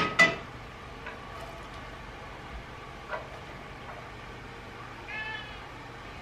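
A domestic cat meowing twice: a short, loud meow just after the start and a fainter, higher meow about five seconds in.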